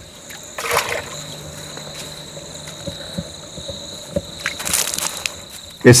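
Insects chirring steadily in a high, even tone. Two brief sloshes of water being scooped with a gourd bowl from a muddy waterhole, about a second in and again near the end.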